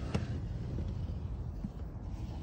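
A handheld camera being moved about in an engine bay: a low steady rumble with a faint hum, and a sharp click just after the start.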